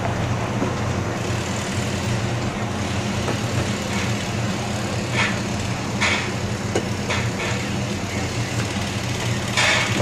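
Heavy-equipment diesel engine running steadily, a low even drone, with a few short sharp noises from site work about four to six seconds in.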